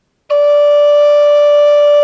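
High Spirits Sparrow Hawk Native American flute in A, aromatic cedar, sounding one steady held note with the right-hand ring and middle fingers raised. The note begins about a quarter second in.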